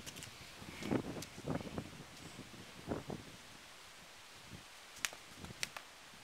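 A skipping rope slapping the pavement twice near the end, two sharp clicks a little over half a second apart, as skipping starts again; a few soft, muffled sounds come before.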